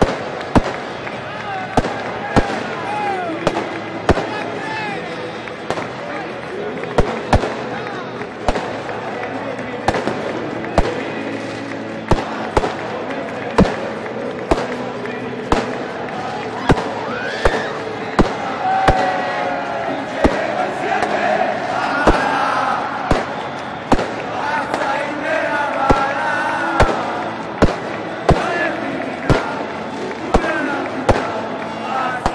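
Firecrackers banging over and over at irregular spacing, about one or two a second, over a dense stadium crowd shouting and cheering, with louder yells rising and falling in the middle stretch.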